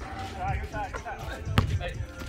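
A basketball strikes hard once, a sharp bang about one and a half seconds in, amid players' voices calling out.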